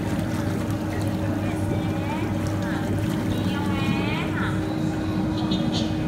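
Whirlpool jets of a baby spa tub running: a steady motor hum under churning, bubbling water. A high voice sounds briefly around the middle.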